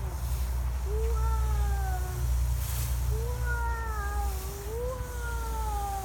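A young child's long, drawn-out vocal calls, like stretched-out "whoooa" sounds. There are several in a row, each held for a second or two, with the pitch sliding slowly up and down, over a steady low rumble.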